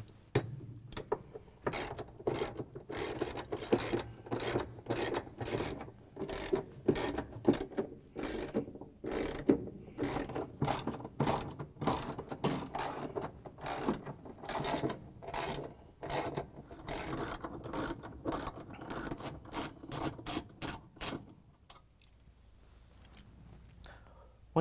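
Hand ratchet with an extension and socket clicking in quick runs as the bolts holding a GE washer transmission to the tub bottom are unscrewed. The clicking stops about three seconds before the end.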